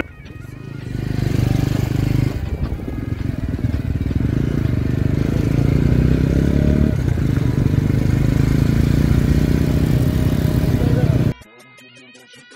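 Motorcycle engine running while riding, with wind noise over the on-bike camera's microphone. It fades in over the first second and cuts off abruptly near the end.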